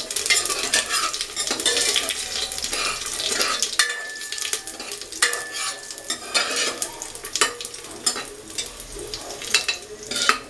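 Cumin seeds and whole spices sizzling and crackling in hot ghee in a stainless-steel pressure cooker while a steel ladle stirs them, scraping and clinking against the pot: the tempering being roasted. A thin high tone sounds in two stretches near the middle.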